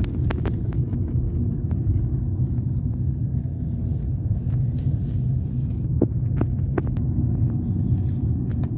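Car cabin noise while driving: a steady low engine and road rumble, with a few light clicks and knocks near the start and again about six to seven seconds in.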